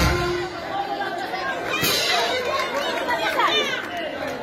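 A crowd of many voices talking and calling out at once, with a few high cries near the end.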